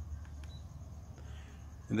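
A few faint clicks of buttons being pressed to step through a projector's on-screen settings menu, over a low steady hum.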